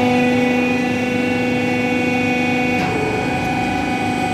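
Hydraulic wheel testing machine's motor-driven pump running with a steady hum made of several held tones. Its lowest strong tone drops out about three seconds in while the rest of the hum carries on.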